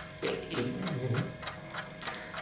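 Steady, quick ticking, about four ticks a second, with a low murmured voice sound in the first half.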